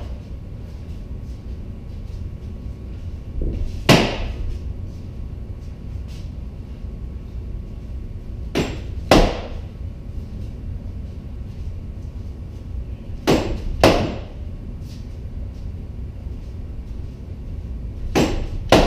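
SCA heavy-combat rattan sword striking a wrapped pell post: three pairs of sharp whacks, the two blows in each pair about half a second apart and the pairs about five seconds apart. The second blow of each pair is usually the louder.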